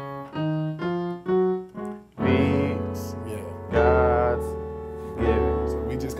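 Gospel piano playing a pickup: five single notes walking upward in quick steps, then three full chords about a second and a half apart, each left to ring.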